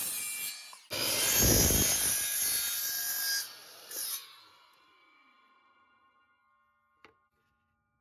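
Miter saw running and cutting a 45-degree miter through a cedar fence board, in two loud surges with a short break under a second in. The saw is then released and the blade spins down with a fading whine, and a single click follows about seven seconds in.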